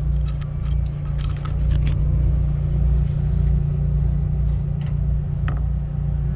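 A car engine idling with a steady low rumble that pulses unevenly, with a scatter of light clicks and taps over it in the first two seconds and again about five seconds in.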